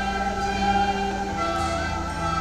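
A group of children playing recorders together: a simple tune of held notes that change every half second or so, slightly out of tune with one another.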